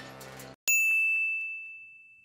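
Background music cuts off about half a second in, then a single bright ding sound effect strikes and rings, fading slowly away over nearly two seconds.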